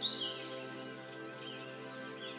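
Soft, steady background music of held tones, with faint bird chirps scattered through it.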